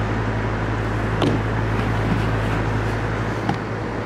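A steady low hum under an even hiss, with a faint click about a second in and another a little past three seconds.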